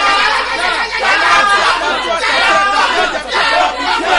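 A man praying aloud with force in unbroken speech that the recogniser did not take for English.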